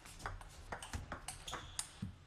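Table tennis ball clicking sharply off the rackets and the table in a quick rally, several hits and bounces a few tenths of a second apart.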